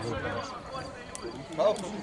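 Voices shouting on a football pitch, a loud call near the end, with a sharp knock about a second in from a football being kicked.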